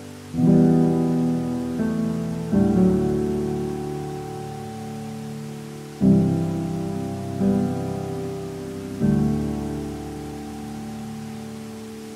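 Solo piano playing slow, sustained chords, five struck over the span, each ringing and fading before the next. Beneath them runs a faint, steady rush of water.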